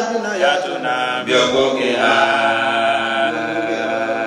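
A man chanting a religious recitation into a microphone, melodic, with long held notes, the longest lasting about two seconds in the middle.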